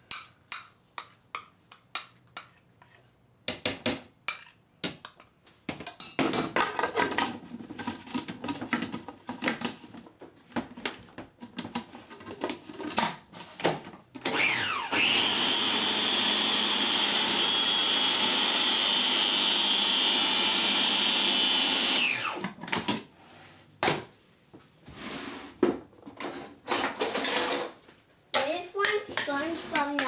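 Food processor motor spinning up with a rising whine, running steadily for about seven seconds while it blends an egg, butter and coconut-flour batter, then winding down. Before it, clinks and knocks of a spoon scraping butter from a cup into the plastic bowl and of the lid being fitted.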